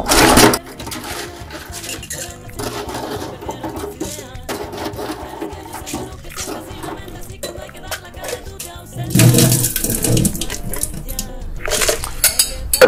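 Ice cubes scooped from a steel ice bin into a stainless steel cocktail shaker, clattering against the metal, louder at the start and again about nine seconds in. Background music plays underneath.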